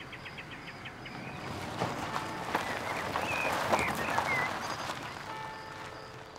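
An Opel car drives up and stops: the engine and tyre noise swells and then dies down after about four seconds. Birds chirp briefly over it.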